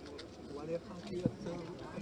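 Faint, low murmur of voices from people crowded close around, with no clear words.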